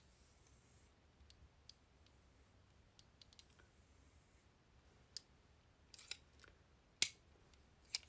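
Faint scattered clicks and light taps over quiet room tone, with a few close together late on and one sharper click about seven seconds in.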